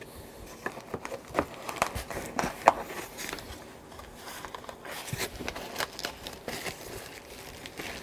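Packaging being handled: plastic wrap crinkling and cardboard rustling, with scattered light taps and knocks as a small paper-wrapped parts package is lifted out of the kit box. The sharpest knock comes a little under three seconds in.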